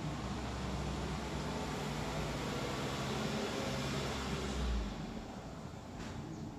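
A steady rushing noise with a low hum under it, easing off about five seconds in.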